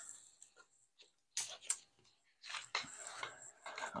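Light clicks, knocks and rustling from an LC-1 ALICE pack frame, its nylon straps and buckles, as it is picked up and handled. The sharpest knock comes right at the start, then scattered faint clicks.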